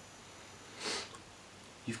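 One short nasal sniff a little under a second in, against quiet room tone; the start of a spoken word follows at the very end.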